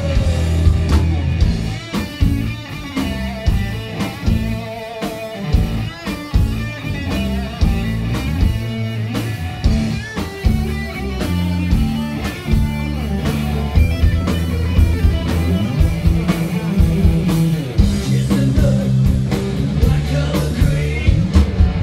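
Southern rock band playing live: an instrumental passage with electric lead guitar lines over bass guitar and drum kit.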